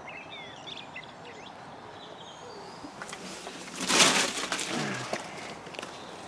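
Small birds chirping in short, quick calls over a steady outdoor hush. About four seconds in comes a brief, loud rush of noise, the loudest sound here.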